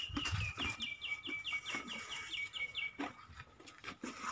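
A small bird calling in a rapid series of about a dozen short, evenly repeated high notes, starting about half a second in and stopping about three seconds in. Under it, scattered rustling and crunching of banana leaves being handled and eaten by an elephant.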